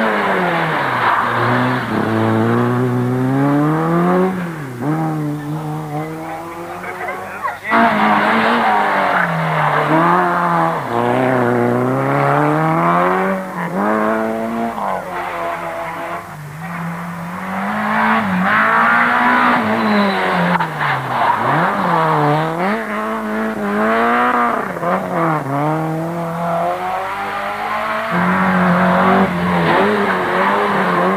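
Rally car engines revving hard as several cars pass in turn through a bend, the pitch climbing and dropping again and again through gear changes and lifts off the throttle, with an abrupt break about eight seconds in.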